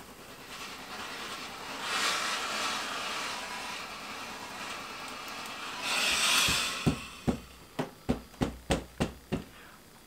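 Steam generator iron hissing steadily as it pushes out steam during pressing, with a louder burst of steam about six seconds in. Near the end come about ten quick, sharp knocks.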